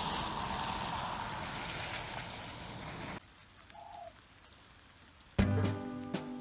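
Rain falling, a steady even hiss for about three seconds that cuts off suddenly. This is followed by near quiet with one brief faint tone. Background music begins near the end.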